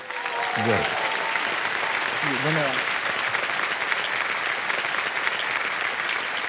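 Studio audience applauding, a steady wash of clapping, with a voice briefly heard over it once or twice in the first few seconds.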